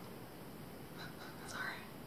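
A woman whispering a soft "sorry" about a second in, over quiet room tone.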